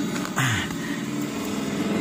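A car engine idles with a steady low hum, heard from inside the cabin. A short burst of noise comes about half a second in.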